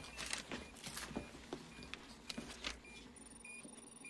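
Soft footsteps and movement, then from about two and a half seconds in, short high electronic beeps from a radio-tracking receiver, a little under one a second, with a faint high whine behind them.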